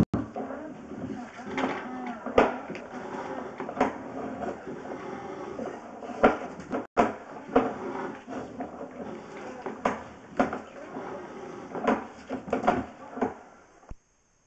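Sewer inspection camera's push cable being pulled back through the line by hand: a string of irregular knocks and clatters, about one a second, over a steady rumble of handling noise.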